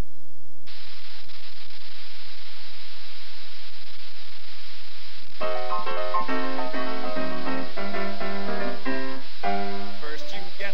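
A steady hiss for about the first five seconds, then a grand piano starts playing bouncy rag-style chords, the introduction to a comic song.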